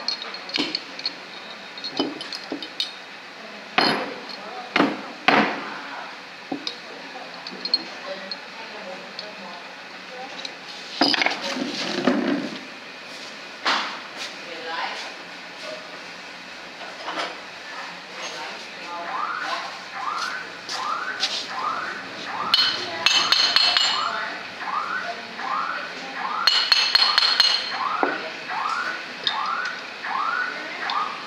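Light metallic clinks and taps of a steel tool against the aluminium body of a VE diesel injection pump as the vane-pump housing is turned into line with its locating holes. Irregular, with a few sharper knocks early on. From about two-thirds of the way in, a rising chirp repeats about one and a half times a second in the background.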